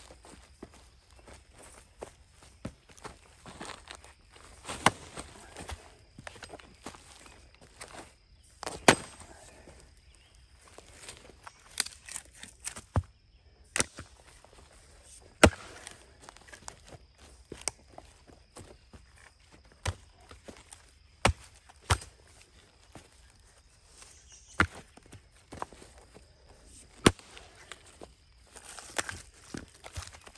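Axe blows splitting firewood rounds on the ground: about a dozen sharp chops a few seconds apart at an uneven pace, with lighter knocks of split pieces between them. The axe is an Arvika 5 Star single-bit axe.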